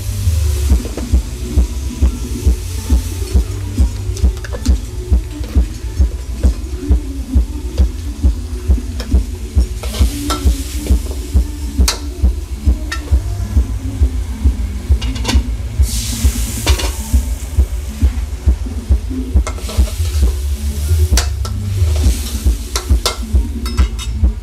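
Chilies and vegetables frying in oil in a wok over a gas burner: steady sizzling with the spatula scraping and clacking against the metal, and the sizzle surging louder several times as seasoning hits the hot pan. A low pulse about twice a second runs underneath.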